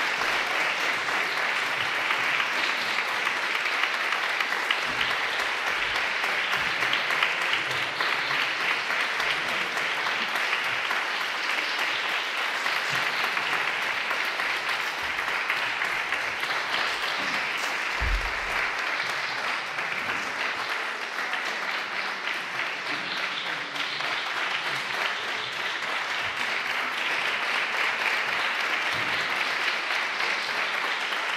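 Audience applauding steadily, many hands clapping at once, at the close of a chamber performance.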